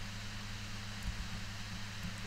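Steady background hiss with a low electrical hum: the recording's noise floor, with no other distinct sound.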